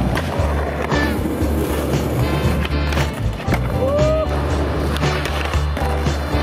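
Skateboard on concrete: wheels rolling, with a few sharp clacks of the board popping and landing, under background music with a steady bass beat.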